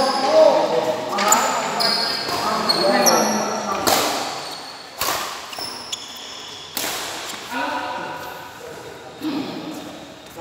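Badminton rackets hitting a shuttlecock during a fast rally, about six sharp hits each followed by a brief high ring from the strings, echoing in a large hall. Voices call out during the first few seconds and again near the end.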